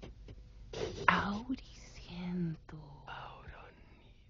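A voice whispering and breathing out wordless syllables of sound poetry, with a short low vocal note just after two seconds in.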